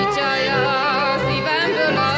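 A woman singing a Hungarian folk song live at the microphone, her voice ornamented and wavering in pitch, over a steady sustained instrumental accompaniment.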